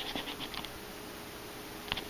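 Faint scratching and rustling over quiet room tone, with one short click near the end.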